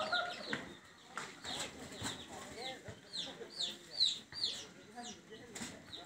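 Small birds chirping: a quick series of short, high chirps, each falling in pitch, several a second, with fainter lower calls beneath.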